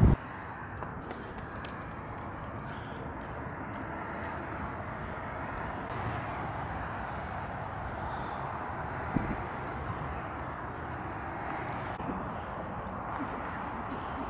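Distant jet airliner flying over, a steady rumble that slowly grows louder, with a faint high whine near the end.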